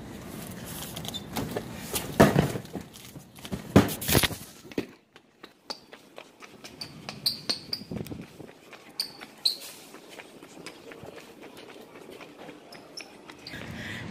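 Cardboard boxes being bumped and shifted, with a few loud knocks in the first five seconds. After that come quieter footsteps with a few short, high squeaks.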